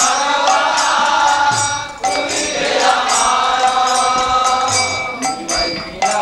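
A devotional bhajan chanted to a steady beat of jingling percussion, with a short break between sung lines about two seconds in.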